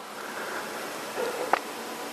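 Steady background hiss of room tone between spoken sentences, with a brief faint click about one and a half seconds in.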